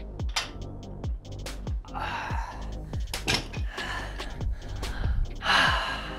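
Electronic background music with a steady kick-drum beat, over a man's strained, gasping breaths from heavy lifting; a loud breathy exhale comes shortly before the end.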